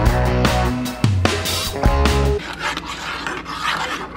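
Background rock music with guitar and a steady beat, which stops a little past halfway through. After it comes a metal spoon scraping and stirring around a saucepan of gelatin and water.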